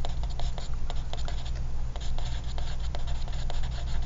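Pen writing on lined paper: many short, quick scratching strokes as words are written out, over a steady low hum.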